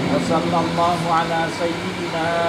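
A man's voice reciting a prayer in a drawn-out, chant-like way, with notes held and sliding, over a steady low hum.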